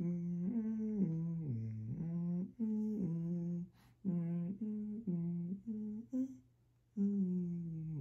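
A man humming a simple tune with closed lips: a run of short held notes stepping up and down, broken by a few brief pauses.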